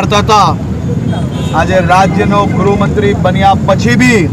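A man speaking to reporters over a steady low background rumble of street noise.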